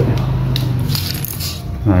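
A clear plastic bag being picked up and handled: a quick cluster of light clicks and crinkles over a steady low hum.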